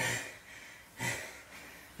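A man breathing hard from exertion: two short, sharp breaths about a second apart.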